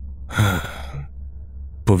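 A single breathy sigh or exhalation about half a second in, lasting about half a second, over a steady low drone of dark ambient background music.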